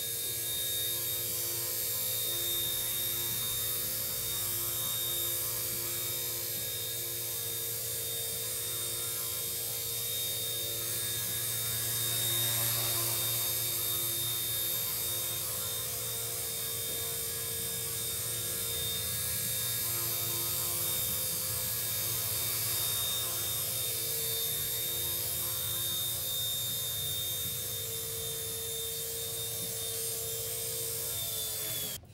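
XK K110 micro RC helicopter hovering with its brushless tail motor: a steady whine from the rotors and motors, with a high-pitched tone over it, swelling slightly about twelve seconds in.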